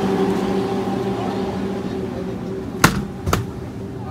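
A steady hum with several tones from a glass-door drink cooler, fading somewhat after the halfway point. Near the end come two sharp knocks about half a second apart, as the cooler door is shut.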